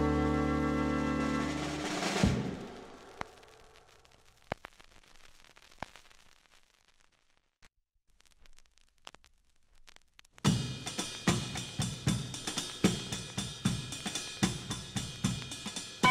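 A band's record ends on a final chord about two seconds in and rings away into a near-quiet gap marked by a few faint clicks. About ten seconds in, the next track starts with a drum kit: a steady beat of snare and bass drum hits.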